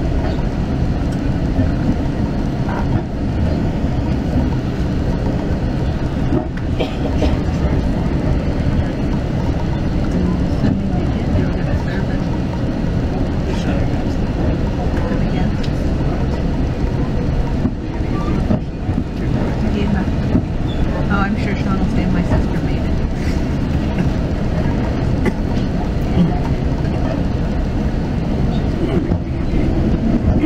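Steady low rumble of a West Coast Express commuter train heard from inside a passenger coach as it runs along.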